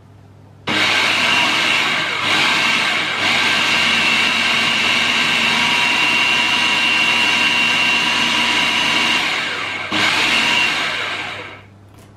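Electric food processor motor running at a steady pitch, mixing a thin cake batter of eggs, sugar, melted butter and milk. It starts just under a second in, briefly stops and restarts about ten seconds in, then winds down near the end.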